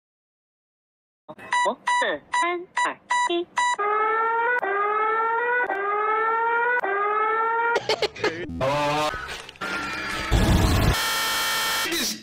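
China's emergency alert alarm: a quick run of short electronic beeps, then a rising tone that repeats about once a second. About eight seconds in, it breaks off into a loud, distorted burst of noise with a heavy low boom near the end.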